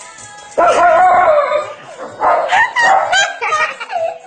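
A dog howling in wavering, pitched calls: one long howl of about a second starting about half a second in, then a run of shorter rising and falling howls.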